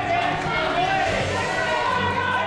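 A group of men's voices shouting and calling over each other in a large, echoing room, a team revving itself up during a pre-game warm-up.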